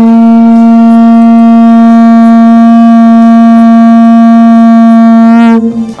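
A conch shell blown in one long, loud, steady note of about six seconds, breaking off near the end.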